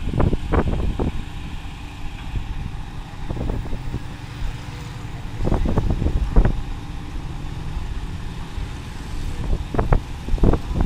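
Engine of a truck-mounted crane running steadily with a low rumble during a lift. Irregular short bursts of noise sit on top, clustered near the start, around the middle and near the end.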